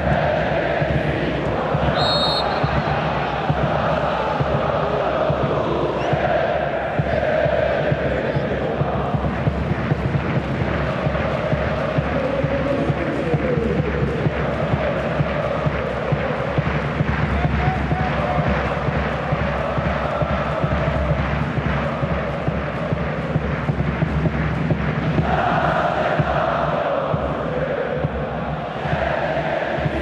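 Football stadium crowd chanting in unison, with a steady, regular beat under the singing. About two seconds in, a short, high referee's whistle sounds over it.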